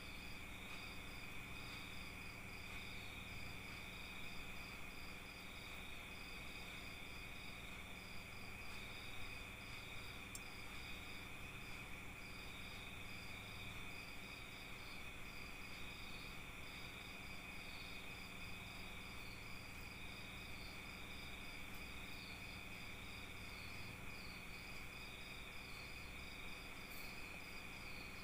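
Faint crickets chirping in the background: short high pulses repeating several times a second, with a steady high hum underneath.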